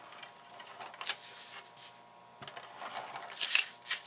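ATG tape gun being run along the edges of a paper card layer, laying down double-sided adhesive tape in two passes with a short pause about halfway through.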